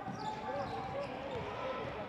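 Faint court sound from a basketball game: a ball being dribbled on a hardwood floor over a low steady arena hum.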